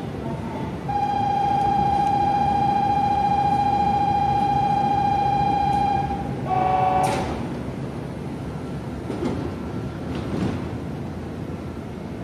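A station platform departure signal sounds a steady, slightly warbling electronic tone for about five seconds, then a short chord-like tone follows with a brief knock as the train's doors close.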